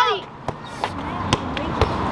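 A football being kicked and bouncing on paving stones: a few sharp thuds spaced about half a second apart.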